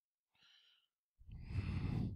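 A person's heavy sigh, a long breathy exhale close to the microphone that starts a little past the middle and lasts about a second, in a pause of angry talk.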